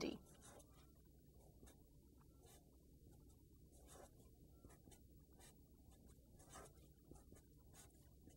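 Faint scratching of a felt-tip marker writing on paper, as a scatter of short strokes.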